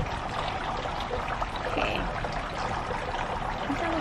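Steady trickling, water-like noise with no clear breaks.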